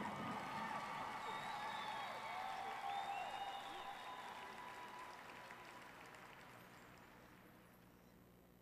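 Stadium crowd applauding and cheering, with scattered shouts, gradually dying away.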